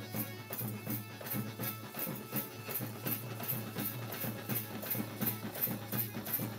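Bangladeshi Maizbhandari sama music without singing: dhol and tabla drumming under a jingling hand percussion that keeps a steady beat of about three strikes a second.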